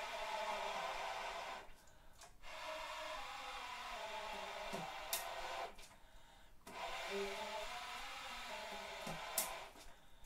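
Alto saxophone blown with breath alone: three long, quiet, airy breath tones through the horn, a faint pitch under the hiss, with short pauses between them and a couple of small clicks.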